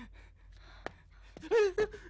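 A person's loud, high-pitched cry about one and a half seconds in. Before it is a quiet stretch broken by a single sharp click.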